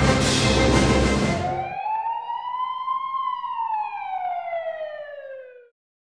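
Background music that cuts off a little under two seconds in, followed by a single emergency-vehicle siren wail that rises and then falls in pitch, growing fainter until it stops near the end.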